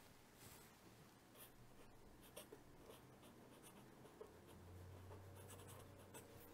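Faint scratching of a pen writing on paper, in short separate strokes. A low steady hum comes in about four seconds in.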